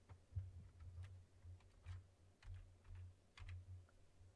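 Faint computer keyboard typing: a string of short, irregular keystrokes as a single short word is typed.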